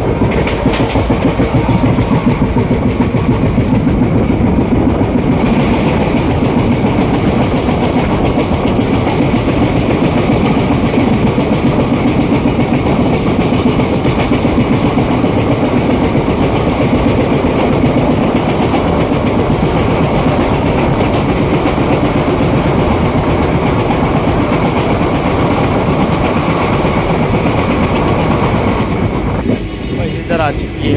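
A passenger train running at speed, heard from an open coach door, with the steady rush and clatter of its wheels on the rails. A train on the next track passes close alongside in the opposite direction, adding to the noise.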